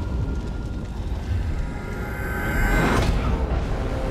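Action-film soundtrack: dramatic score over a dense low rumble, with a swelling whoosh that peaks in a loud hit about three seconds in.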